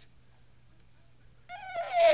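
Quiet room for about a second and a half, then a high-pitched, wavering voice starts near the end.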